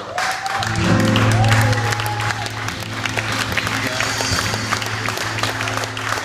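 Concert audience breaking into applause, with voices calling out, while the band's last sustained notes still ring underneath.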